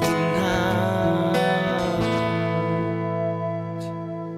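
Guitar chords in a rock song ringing out with no vocals, a new chord struck about two seconds in, slowly fading toward the end.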